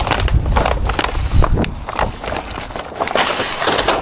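Plastic-wrapped metal curtain poles being handled out of a skip: crinkling packaging with irregular clacks and knocks as the poles move.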